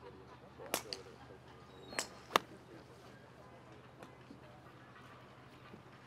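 Golf iron striking balls on a practice range: a few sharp cracks, the loudest about two and a half seconds in, with softer ones near one second and two seconds.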